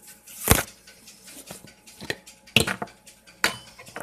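A metal spoon clinking and tapping against a glass French press carafe while ground coffee is added and stirred, in scattered irregular strikes, with the loudest knock about half a second in.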